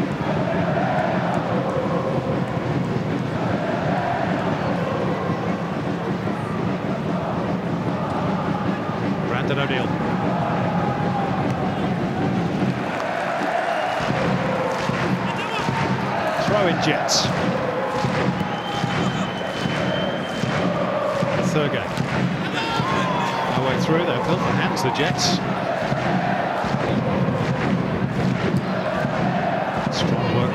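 Football stadium crowd noise: many voices at an even, steady level, with fans chanting in recurring swells. A few short, high-pitched calls or whistles cut through in the second half.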